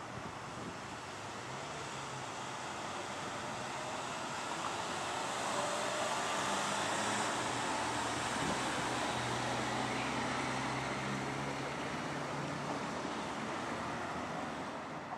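A Mercedes-Benz Sprinter ambulance drives past close by: engine and tyre noise grows louder to a peak about halfway through, then eases as it moves away. Wind noise on the microphone runs underneath.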